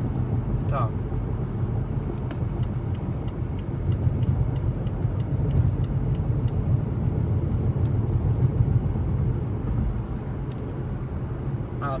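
A car's steady engine and road rumble inside the cabin at freeway speed. From about two seconds in until near the end it is overlaid by a faint, regular ticking, typical of a turn-signal relay left on.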